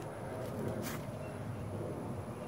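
Faint, steady outdoor background noise with a brief soft hiss about a second in.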